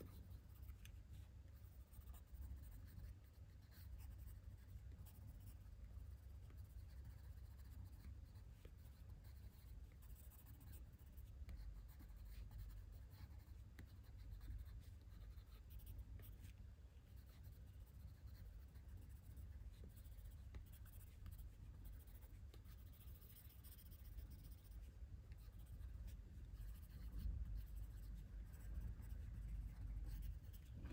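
A coloured pencil scratching faintly across paper in short shading strokes, over a steady low hum.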